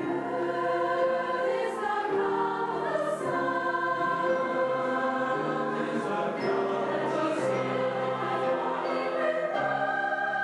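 Large mixed choir of adult and children's voices singing in parts, in long held chords that change every second or so. The voices come in together at the very start.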